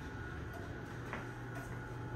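Steady low hum inside an elevator car, with a faint thin high tone over it and a faint click or two about half a second and a second in.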